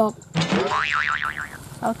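Cartoon 'boing' comedy sound effect: a sudden twang about a third of a second in, then a pitch that wobbles quickly up and down for about a second. A voice speaks again near the end.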